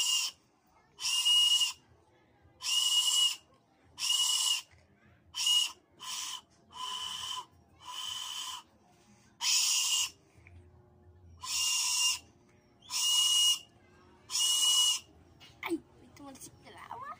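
Homemade whistle made from a ballpoint pen barrel, blown in about a dozen short blasts, each a breathy, shrill note lasting under a second; a few in the middle are softer.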